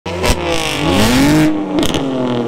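A BMW M3's twin-turbo inline-six being revved through an aftermarket valved exhaust. The pitch climbs, holds, then drops, with a sharp crack near the start and a few pops as the revs fall.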